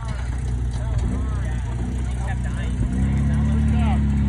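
Toyota pickup rock crawler's engine running at low revs, then throttled up about three seconds in, the engine note rising and getting louder as it pulls under load.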